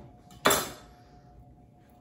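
Chef's knife set down on a wooden cutting board: one sharp clack about half a second in that rings out briefly.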